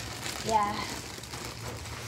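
Plastic bag rustling and crinkling as it is handled with clothes inside.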